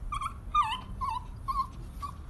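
Dog whining: a string of about five short, high whimpers, some dipping in pitch, the loudest about half a second in.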